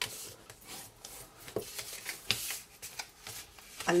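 Bone folder rubbing along the folded score lines of patterned paper, burnishing the creases, with paper sliding and crinkling and a few light knocks on the mat.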